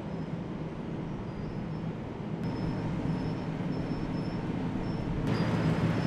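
Asphalt milling machine (cold planer) running steadily with a low engine drone as it mills off the old road surface. The sound grows a little louder near the end.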